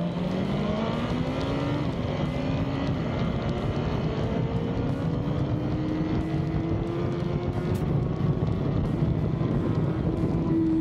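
Race motorcycle engine under hard acceleration heard onboard, its pitch climbing through the revs with two quick upshifts about two and three seconds in, then a long steady rise. Wind rush on the microphone underneath.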